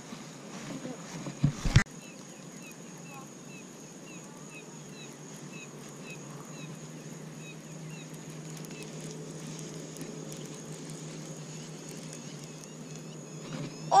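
A sharp knock about two seconds in, then a steady low hum under a series of small, evenly spaced high chirps, about three a second, for several seconds.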